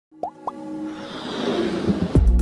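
Logo-intro sound design: two quick rising pops, then a swell of noise and tones that builds steadily toward the end.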